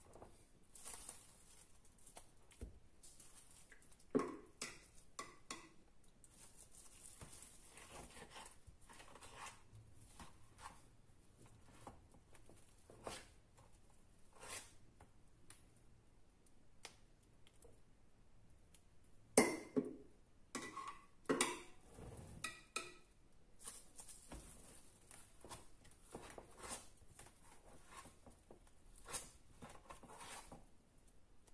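Metal ice-cream scoop scraping and digging into frozen ice cream in a plastic tub: faint, intermittent scrapes and knocks, loudest in a cluster about two-thirds of the way through.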